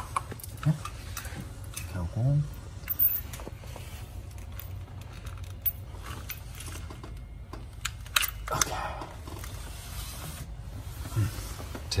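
Scattered clicks and plastic handling noises as a timing light's inductive clamp is fitted onto a spark-plug wire, over a steady low hum.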